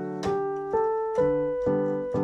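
Instrumental break of a football club anthem on a piano-sounding keyboard, with no singing: notes and chords struck about twice a second, each fading before the next.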